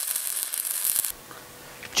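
Stick-welding arc from a 6010 electrode run on DC, crackling steadily, then cutting off suddenly about halfway through.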